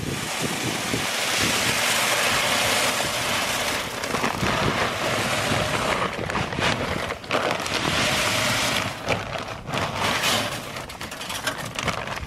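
Salt granules pouring out of a torn bag through a steel grate into a plastic spreader hopper, a steady dense hiss. From about six seconds in the nearly empty plastic bag crinkles and rustles in short irregular crackles as it is shaken out.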